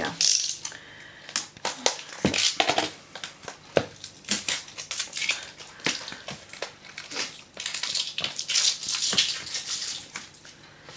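Plastic shrink-wrap crinkling and tearing as a paper pad is unwrapped by hand, an irregular run of sharp crackles and rustles.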